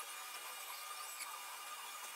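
Faint, steady background hiss with no distinct sounds: room tone.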